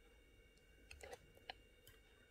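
Near silence with a few faint, light clicks from about a second in: needle-nose pliers gripping and working jewellery wire against a drilled stone.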